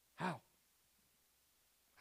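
A man's single short sigh, falling in pitch, about a quarter of a second in.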